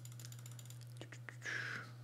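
A few light computer keyboard or mouse clicks over a low steady hum, with a short breath about one and a half seconds in.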